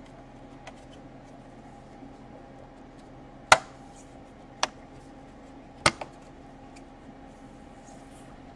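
Laptop bottom cover being pressed down onto the chassis: three sharp clicks about a second apart in the second half, the first the loudest, over a faint steady hum.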